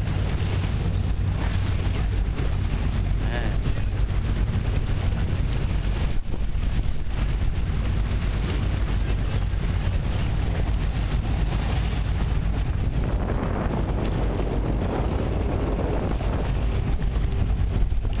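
Wind buffeting the microphone over the steady low rumble of a watercraft engine running on open water, with no break through the whole stretch.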